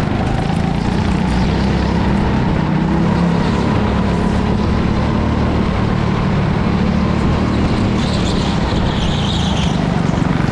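Go-kart running at speed, heard from on board the kart: a loud, steady drone that holds through the lap with no let-up.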